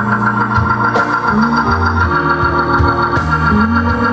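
Live blues band with a Hammond B3 organ playing sustained chords over a walking bass line and drums.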